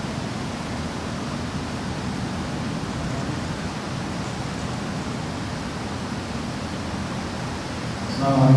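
Steady, even background hiss with no speech and no distinct events.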